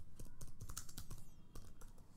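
Computer keyboard being typed on: a quick run of keystroke clicks as the words 'phone cover' are entered.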